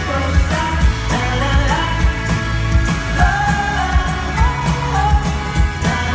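Indie folk-pop band playing live: a sung vocal line over electric and acoustic guitars, keyboards and a steady drum beat, heard from within the audience.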